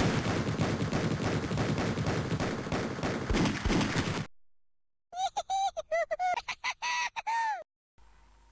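Cartoon title sound effects: a dense rattle of rapid clicks for about four seconds that fades out, then, after a short break, a run of about ten short squeaky chirps that climb gradually in pitch.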